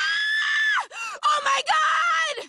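A young woman's high-pitched scream, held for most of a second and then dropping off, followed by several shorter screams with wavering pitch.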